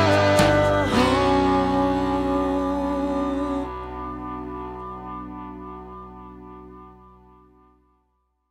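The end of a rock song: drums and the band hit a last chord about a second in, and the chord rings on, fading away over the next several seconds.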